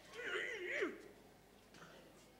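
A high, wavering wordless cry from a person, lasting just under a second near the start: its pitch rises and falls twice, like a moan or whimper.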